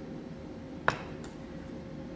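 A steel palette knife gives a single sharp clink about a second in as it knocks against a hard surface while being moved from the paste leaf to the palette, over a faint steady hum.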